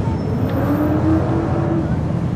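Car engines running, a steady low rumble with no clear rev or pass-by.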